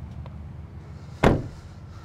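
Motorcycle engines idling with a steady low rumble as the bikes fire up, and one sharp slam a little over a second in, like a vehicle door being shut.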